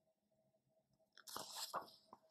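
A paper page of a picture book being turned: a quiet pause, then a brief crisp rustle of paper a little over a second in.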